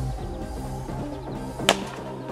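Background music, with a single sharp crack near the end as a plastic Blitzball bat hits the ball.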